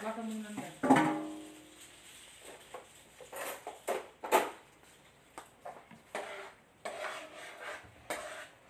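Kitchen clatter of a metal frying pan and cooking utensils: a ringing clang about a second in, then scattered lighter knocks and clinks.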